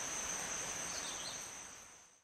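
Forest insects trilling in a steady high-pitched chorus of two continuous tones over a faint hiss, fading out near the end.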